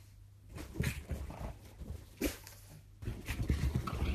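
A pug playing on a bed, making a few short, separate noises, then from about three seconds in a busier stretch of low bumps and rustling as it scrabbles on the sheet.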